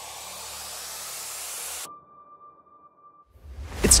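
Underwater ambience sound effect: a rushing hiss over a low hum that builds slightly and cuts off suddenly about two seconds in. A faint steady tone follows for about a second and a half.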